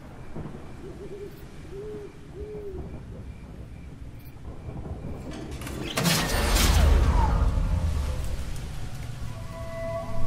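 Three owl hoots over a low rumble of night wind, then about six seconds in a loud crack of thunder that rolls on and slowly dies away.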